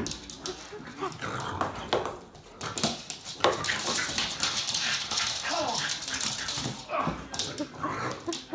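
A French bulldog playing rough, making short vocal sounds, with its claws clicking and scrabbling on a wooden floor as its paws slip.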